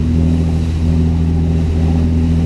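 Boat diesel engines running steadily, a low hum with a few even overtones, over a light hiss of rushing water and wind.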